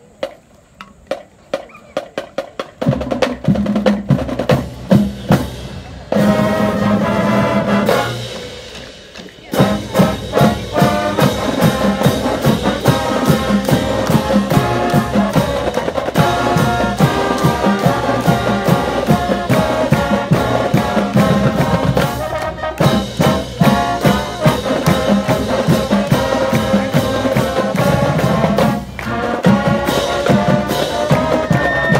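High school marching band playing a brass-heavy piece, with trombones, saxophones and drums. It starts after a few seconds of evenly spaced clicks, drops away briefly around eight seconds in, then plays on.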